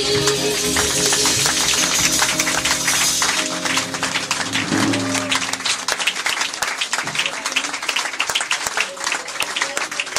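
A jazz combo's closing chord ringing out, with a wash of high sound above it, then audience applause with dense clapping from about three seconds in.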